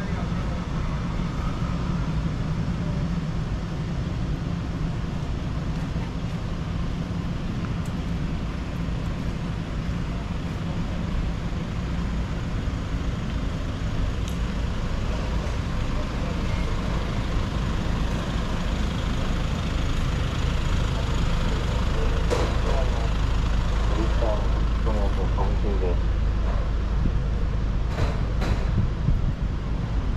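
Street ambience: a steady low traffic rumble that grows stronger past the middle, with people's voices in the middle and a few sharp clicks near the end.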